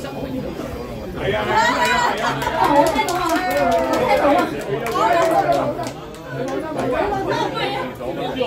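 Chatter of several people talking over one another in a large hall, growing louder about a second in.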